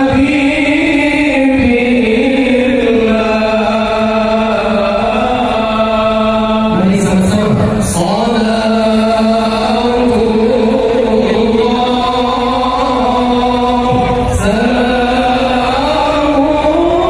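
Shalawat, Islamic devotional chanting, sung in long drawn-out melodic phrases with held notes; a new phrase begins about seven seconds in and again near the end.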